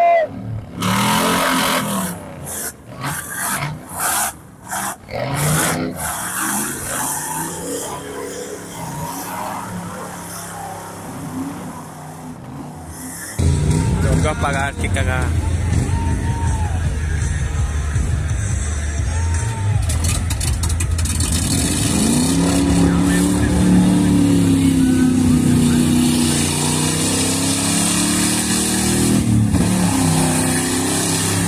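Off-road racing 4x4s driving hard through deep mud, engines revving, with voices in the background. About halfway through, the sound turns into a loud, steady engine rumble. Near the end, an engine's pitch rises and falls with the throttle.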